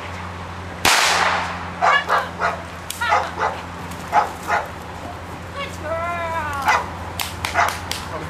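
A single sharp crack about a second in, from the helper's stick or whip used to agitate the dog. It is followed by an American bulldog barking in short rapid bursts while lunging at the helper. A longer drawn-out rising-and-falling call follows around six seconds in.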